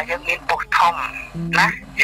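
Speech only: a person talking over a telephone line, as in a radio phone-in.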